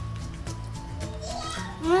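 Background music playing, then near the end a woman's drawn-out 'mmm' of savouring a spoonful of food, rising and falling in pitch.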